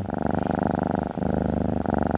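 A domestic cat purring steadily, a fast even pulsing, with a brief break about a second in.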